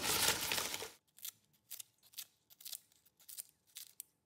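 Pandan leaves being cut into small pieces: a run of short, crisp cuts, roughly two a second, starting about a second in.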